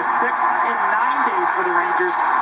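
Television hockey broadcast: an announcer talking, heard through the TV's speaker, with a steady hiss underneath.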